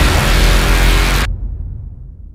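Loud soundtrack music that cuts off suddenly about a second in, leaving a low rumble that fades away.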